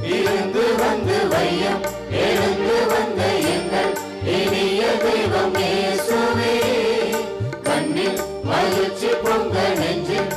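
Tamil church hymn sung with instrumental accompaniment. The singing comes in phrases, with short breaks about two, four and seven and a half seconds in.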